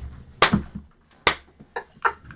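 Two sharp hand claps a little under a second apart during laughter, with a fainter tap near the end.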